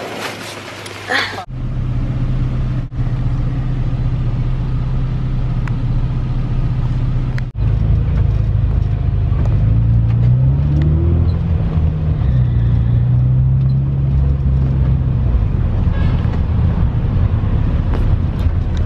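Van engine and road noise heard from inside the cabin: a steady low hum that rises in pitch and falls back about ten seconds in as the van accelerates. A short burst of noise comes about a second in.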